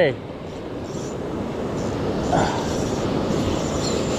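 Ocean surf washing in at the shoreline, a steady rushing of breaking waves that swells slightly.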